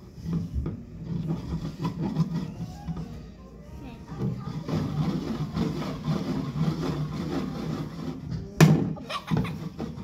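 Indistinct background voices and music, with one sharp knock about eight and a half seconds in.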